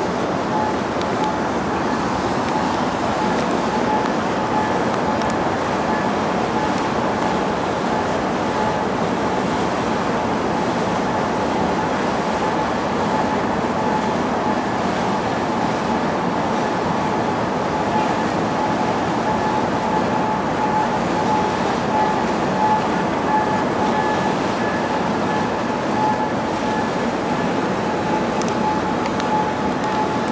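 Steady running noise aboard a moving sightseeing ship: the engine's hum and water rushing past the hull, with a faint steady whine over it.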